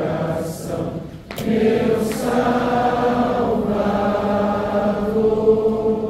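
A congregation singing a hymn together, many voices holding long, slow notes with a short break between lines a little over a second in.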